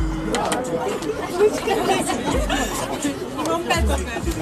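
Voices talking over one another, with a few short low rumbles.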